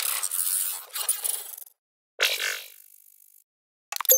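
Sound effects of an animated logo intro: a hissing whoosh that fades out over about a second and a half, a break, a second shorter whoosh fading away, then a brief sharp hit at the very end.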